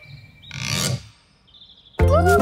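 A short swishing noise, a cartoon sound effect, lasting about half a second, followed by near silence and a faint high tone near the end.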